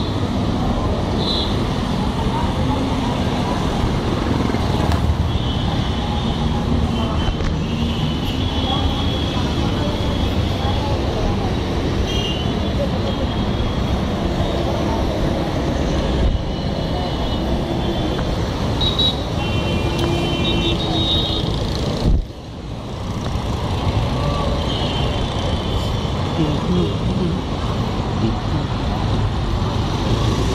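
Steady road traffic noise from passing vehicles, mixed with indistinct voices. Several short high-pitched tones sound at intervals, and the sound drops out briefly once, about two-thirds of the way through.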